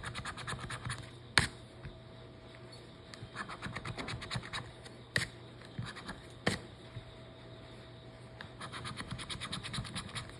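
A scratch-off lottery ticket scratched with a coin: three runs of quick back-and-forth scraping strokes, near the start, about three to four seconds in, and near the end. Between them come three sharp clicks, the loudest about a second and a half in.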